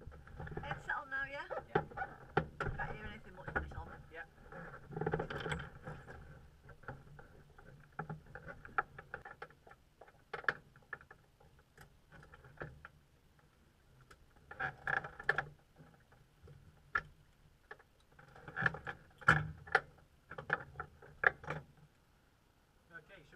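Muffled, unclear voices mixed with frequent clicks and knocks of handling noise on a microphone, over a faint steady low hum.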